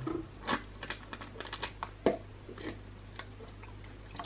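Faint scattered clicks and soft squishing from a plastic tub of whipping cream being handled and emptied into a plastic mixing bowl, over a low steady hum.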